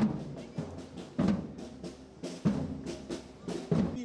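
Marching band drums played on parade: a heavy drum stroke about every second and a quarter, with lighter drumbeats between.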